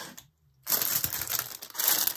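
Thin plastic packaging crinkling and rustling as it is handled, broken by a brief stretch of dead silence a little under half a second in.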